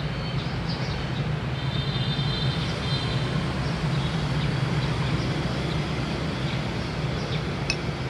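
Steady street traffic noise: a continuous low hum of engines, with a faint high tone between about one and a half and three seconds in.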